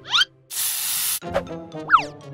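Spray-bottle sound effect: one hiss of about three-quarters of a second, between short rising cartoon squeaks, over light background music.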